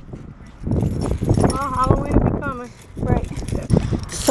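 Indistinct talking, with a few low knocks in between.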